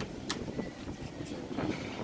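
Wind buffeting the microphone outdoors: a steady, low rumbling noise with a few faint clicks.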